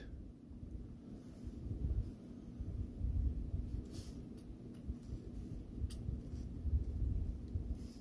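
Faint handling noise with a couple of light clicks: fingers fumbling at a watch's push/pull crown, slipping off as they try to pull it out.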